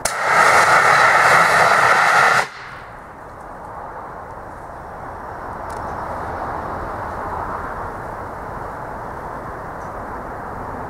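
A CO2 cryo gun, fed liquid CO2 from an upside-down tank through a high-pressure hose, fires one loud hissing jet for about two and a half seconds, then cuts off suddenly. A quieter steady outdoor background noise follows.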